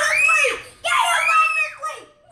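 A child screaming twice in play: two long, loud, high-pitched shrieks, each rising and then falling in pitch, the second starting about a second in.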